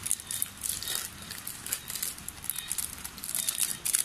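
Plastic seasoning sachets from a packet of Korean spicy instant noodles crinkling as they are handled, in a rapid, irregular crackle.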